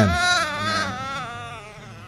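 An infant crying: one long, wavering wail that fades away over about a second and a half.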